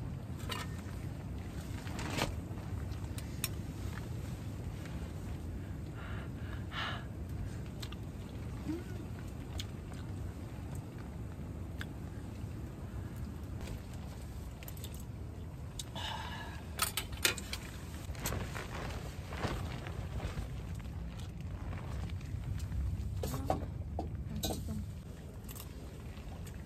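Scattered light clicks and clinks of metal camping bowls, cups and utensils over a steady low rumble, with a cluster of clicks a little past the middle.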